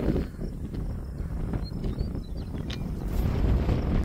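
Strong wind buffeting the phone's microphone: an uneven low rumble that swells and dips.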